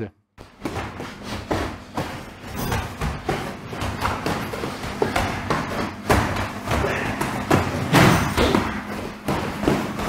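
Boxing gloves striking gloves and guards during sparring: many dull thumps in quick, irregular succession, mixed with footfalls on the mats.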